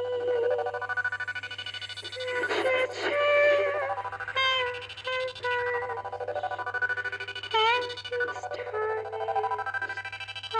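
Live freak-folk music: a high voice holds long, wordless notes with vibrato and pitch slides, including a quick upward swoop near the end. A few short noisy bursts come in about two and a half seconds in.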